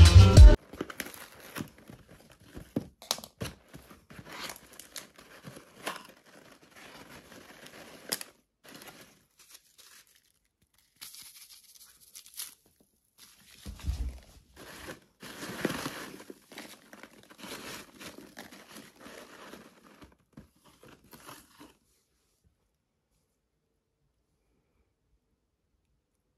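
Hands rustling and crinkling packaging material in a cardboard box of packing peanuts: irregular rustles, crunches and small knocks, loudest a little past the middle, stopping a couple of seconds before the end.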